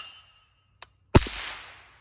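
A suppressed FN PS90 with a Yankee Hill Turbo 5.56 suppressor fires a single supersonic 5.7×28mm round about a second in, a sharp report that rings out and fades. The dying tail of the previous shot fades at the start.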